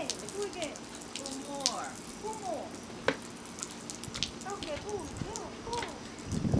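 Soda glugging and gurgling in a 2-liter plastic Coca-Cola bottle as it is drunk from, in short uneven gulps, with a few sharp clicks.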